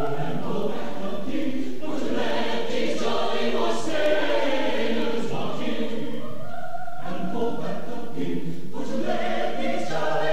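Mixed chamber choir singing in phrases, with short breaks between them.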